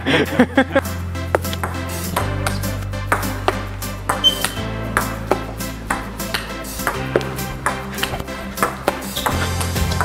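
Table-tennis ball clicking back and forth in a rally played with ice skates as rackets: repeated sharp ticks of the ball bouncing on the table and striking the skates. Background music with a steady bass line plays throughout.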